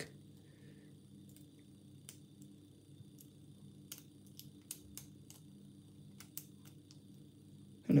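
Faint, irregular clicks of a steel lock pick working the pins inside a Prefer container padlock held under tension with a Z-bar, over a steady low hum. The clicks come mostly in the second half as the pins are lifted and set during single-pin picking.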